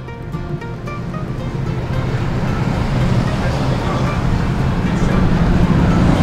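Road and traffic noise heard from a car driving along a town street: a rushing noise that grows steadily louder. Quiet background music plays under it.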